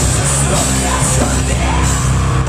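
Live rock band playing loud: electric guitars and drums with a vocalist shouting over them.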